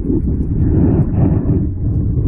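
Water rumbling and sloshing heard from underwater, a loud, muffled, low noise with nothing high-pitched in it.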